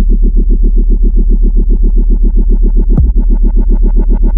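Dubstep-style electronic dance music: a rapidly stuttering synth pulse over a steady deep sub-bass, with a quick downward sweep about three seconds in.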